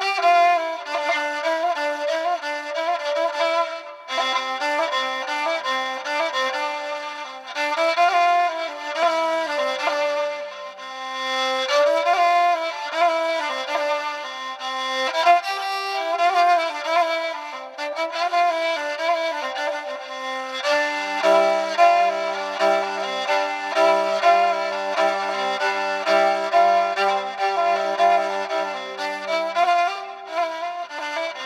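Solo kamancheh, bowed, playing an ornamented Persian classical melody in short phrases. From about two-thirds of the way through, a low steady note is held beneath the melody.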